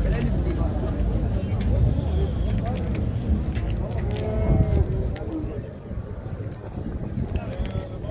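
Calves mooing, the clearest call about four seconds in, over a steady low rumble.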